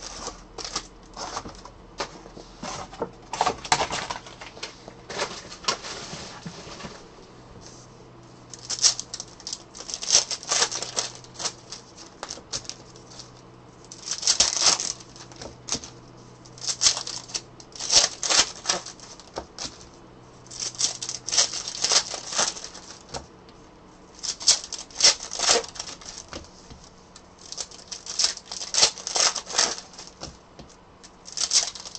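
Trading-card pack wrappers crinkling and tearing open in the hands, with cards being handled, in repeated bursts of crackling every few seconds.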